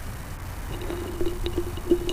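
Outdoor ambience at a cricket ground: a steady low rumble, with a faint, broken, pitched sound and a few light clicks starting about a third of the way in.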